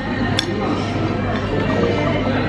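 A fork clinks once against a plate while salad is served, about half a second in, over background music and the murmur of a restaurant dining room.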